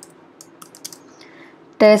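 Computer keyboard typing: a few scattered, light keystrokes as a word is typed.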